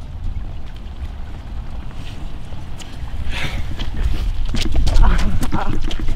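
Wind buffeting the microphone: a low rumble that grows louder in the second half, with faint voices.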